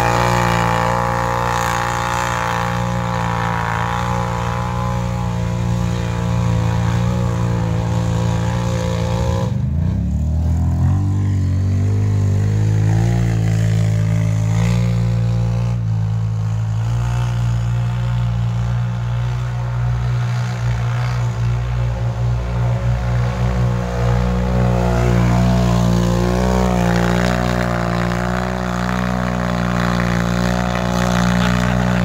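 Can-Am Renegade ATV V-twin engines held at high revs as the machines spin their tyres through soft plowed dirt. About ten seconds in, the engine note climbs in a rev-up.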